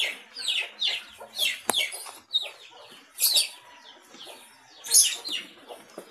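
Birds calling in the background: a series of short, high-pitched chirps, each falling in pitch, coming every half second or so with gaps. A single sharp click falls in among them partway through.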